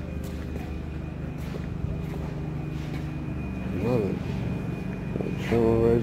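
Vehicle engine idling: a steady low hum, with short bursts of voices about four and five and a half seconds in.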